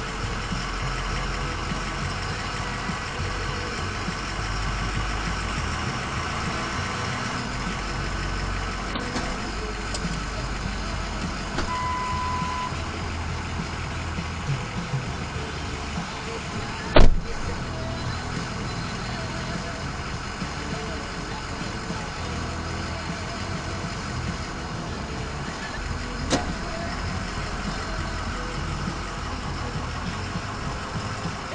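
Ford F-350 pickup's engine idling steadily, heard from inside the cab. A short beep sounds about twelve seconds in, and a sharp knock, the loudest sound, comes about seventeen seconds in, with a lighter click near the end.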